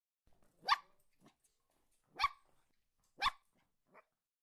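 A dog barking three times: short, sharp barks spaced a second or more apart.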